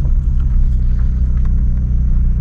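Car engine and road noise heard from inside the cabin while driving: a steady low rumble.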